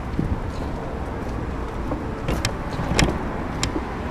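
Steady low rumble of a car and road noise, with a few sharp clicks or knocks in the second half.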